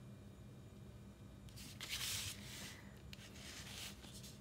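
Uni-ball Eye rollerball pen scratching faintly on watercolour paper while outlining a painted circle, in two short stretches of strokes, the first about a second and a half in and the second near the end.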